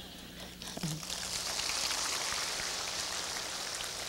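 Audience applauding. The clapping builds up about a second in and then holds steady.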